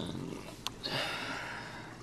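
A small click, then about a second of breath through the nose close to the microphone, over the faint steady trickle of aquarium water.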